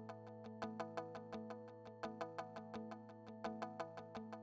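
Background music: a quick, evenly paced run of short notes over a steady held low tone.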